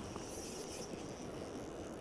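Faint, steady outdoor background of a flowing river with wind rumbling on the microphone.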